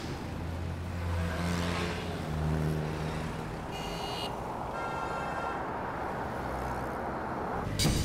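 Street traffic: cars and a motor scooter driving past with their engines running. Two brief high-pitched tones sound near the middle.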